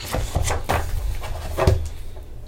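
A page of a large hardcover picture book being turned by hand: paper rustling and flapping, with several short handling knocks as the page is pressed flat on the wooden book stand.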